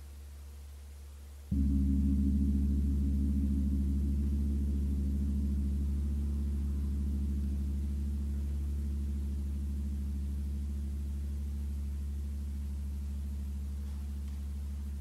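A large gong struck once about a second and a half in, its low ringing fading slowly.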